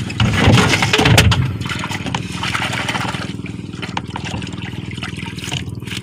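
Small boat's engine running steadily under way, with water rushing and splashing along the hull, loudest in the first second or so.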